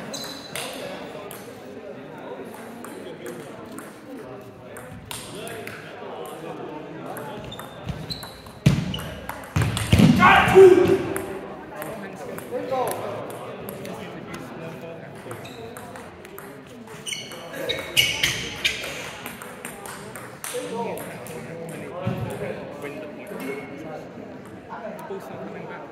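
Table tennis balls bouncing, with many short sharp clicks on the table, bats and floor, among voices in the hall. A voice is loudest about ten seconds in and again near eighteen seconds.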